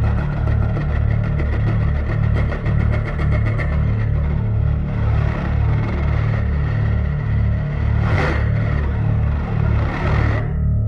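Electric bass guitar prepared with a metal mesh strip woven under its strings, played amplified as a low throbbing drone that pulses evenly, with a gritty buzzing layer above it. A brief noisy scrape comes about eight seconds in.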